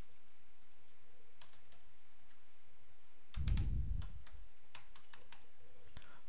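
Computer keyboard typing: scattered key clicks as a word is deleted and retyped, with a brief low rumble on the microphone about three and a half seconds in.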